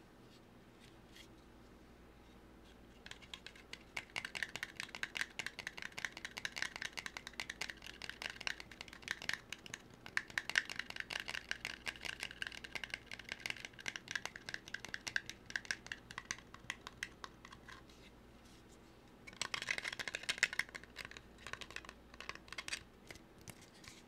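Fast, dense close-up tapping and scratching on an object held right at the microphone, many small sharp strokes a second. It starts about three seconds in, stops briefly about three quarters of the way through, then picks up again.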